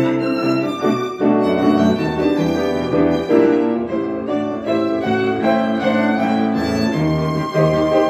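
A small live ensemble of violin, cello and piano playing an arrangement of a pop song, with a bowed violin melody over sustained string and piano chords.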